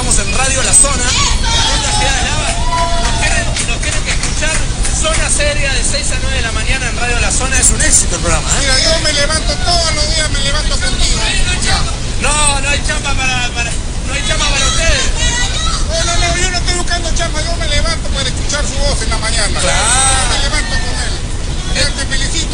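Animated talking by several people at once, with background speech babble over a steady low hum.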